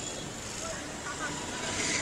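Faint, steady outdoor background noise, like distant street traffic, with no distinct events.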